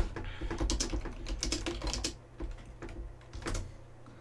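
Typing on a computer keyboard: a quick run of keystrokes, thinning out and stopping shortly before the end, as a web search is typed in.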